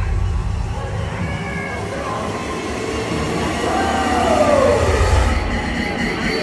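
Live electronic dance music on a club sound system, recorded from within the crowd, in a build-up section: a swelling whoosh over a low rumble. A synth tone glides downward about four seconds in.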